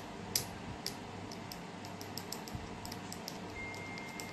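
Light, irregular clicks of typing, several a second, over a faint low hum; a thin steady high-pitched tone comes in near the end.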